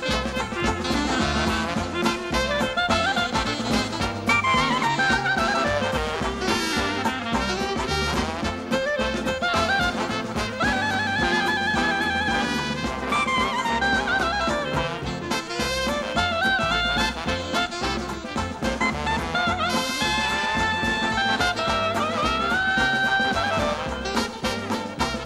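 A traditional jazz band playing a march live, with a clarinet lead over trumpet, trombone, saxophone, double bass and drums, and a steady beat.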